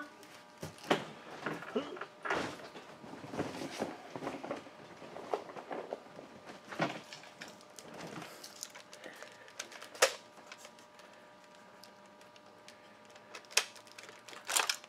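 Scattered handling and rummaging noises as a foam Nerf dart is fetched: light clicks, knocks and rustling of plastic gear, with one sharp click about ten seconds in and a couple more near the end.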